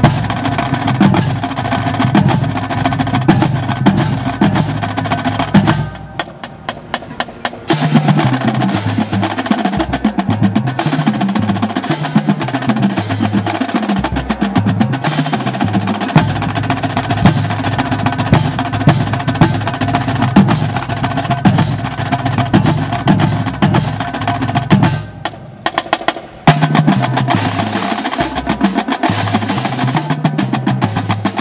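Marching drumline playing a cadence: snare drums in fast, tight patterns and rolls over tuned marching bass drums whose low notes step up and down in pitch. The playing drops to a lighter passage about six seconds in and again around twenty-five seconds, then returns at full volume.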